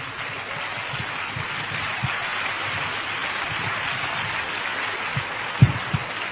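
Audience applauding steadily, swelling a little about a second in and easing off near the end, with a thump just before the end.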